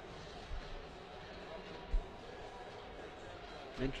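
Steady background noise of a competition hall, with two dull thuds, one about half a second in and a louder one near the two-second mark.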